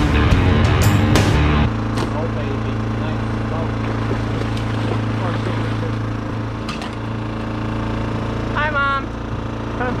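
Background music for the first second and a half, cutting off suddenly to a steady low engine hum from a small motor aboard the boat. A brief voice is heard near the end.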